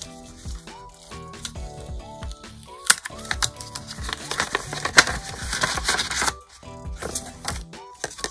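A paper envelope being opened by hand: a sticker seal peeled off and the paper flap lifted, giving paper rustling and small sharp taps, the loudest about three and five seconds in. Background music plays throughout.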